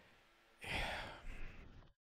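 A man's sigh: one breathy exhale lasting under a second, starting about half a second in and trailing off, with a faint hesitant 'eh'.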